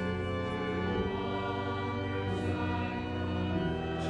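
Church organ playing slow, sustained chords, with the chord changing about half a second in and again near the end.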